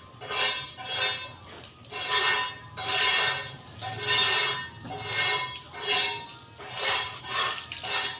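Water from a garden hose spraying against the metal side and windows of a van, rising and falling in surges about once a second as the spray is swept across the panels.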